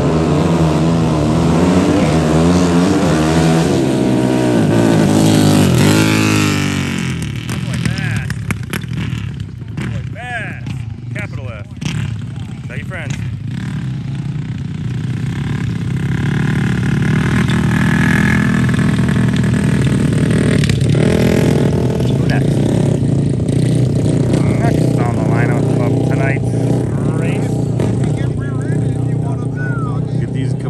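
Racing vehicle engines on a dirt track. One accelerates hard, its pitch climbing over the first six seconds before it falls away. Later, a dirt bike engine runs steadily for several seconds.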